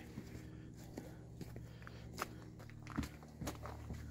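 Footsteps of a person walking on an earth path covered with fallen leaves, roughly two steps a second.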